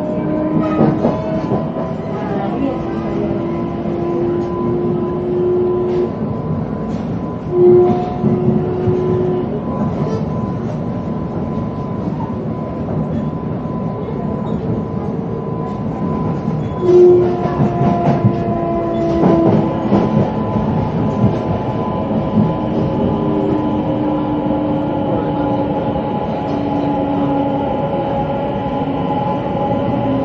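Electric commuter train heard from inside the car while running: a steady running rumble with motor tones that hold and then step to new pitches, a constant high tone, and scattered clicks from the rails. There is a louder burst of clatter about 17 seconds in.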